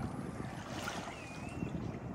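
Wind on the microphone by open water, a steady low rumble. A short whistled bird call dips and rises in pitch once, late on.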